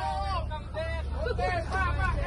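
Fast passenger ferry's engines idling at the beach, a low steady rumble, under the voices of people boarding.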